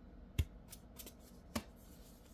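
Tarot cards being handled and drawn from the deck: a few soft clicks and taps, the two clearest about half a second in and again about a second later.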